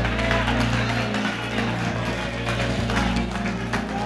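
Church band keyboard holding sustained low chords under a pause in the preaching.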